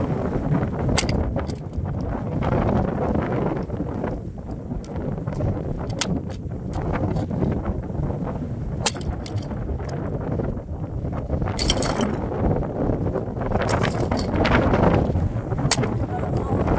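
Wind buffeting the microphone as a steady low rumble, with scattered sharp clinks and cracks of the plastic and metal pieces of a model car being stepped on and crushed under high heels on wooden planks, the loudest about three-quarters of the way through.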